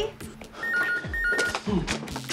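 An electronic telephone ringing: two short warbling bursts of a two-tone trill about a second in, over background music with a steady low beat.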